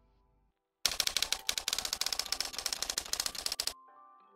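Logo-reveal sound effect: a loud, rapid clatter of sharp clicks, many a second, starting about a second in and cutting off abruptly near the end. A faint musical tone fades out at the very start.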